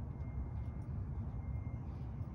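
Steady low outdoor background rumble, with a faint steady high tone above it.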